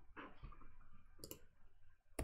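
Near silence: quiet room tone with a couple of faint soft noises and a single sharp click about two-thirds of the way through.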